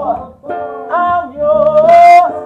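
A singer's voice rising into a long held note over acoustic guitar accompaniment, with a sibilant 's' near the end.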